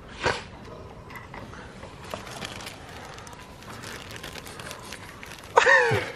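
Quiet handling sounds from mixing metal flake into a tin of paint: faint rustling and small ticks as flake goes in and a flat scraper works the paint. A short sharp sound comes just after the start, and a voice briefly near the end.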